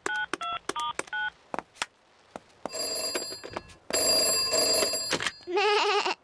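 Push-button telephone being dialled, about six quick two-tone beeps, followed by the called telephone ringing twice, each ring about a second long. A voice answers near the end.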